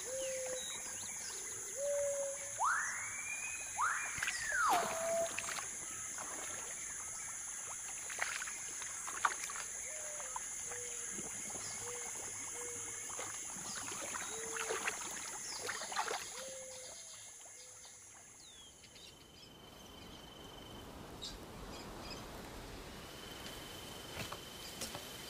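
Wet forest ambience: a steady high insect drone with short, repeated low calls and two rising-and-falling whistled bird calls about three to five seconds in. The insect drone stops near the end, leaving a quieter background with a faint steady high tone.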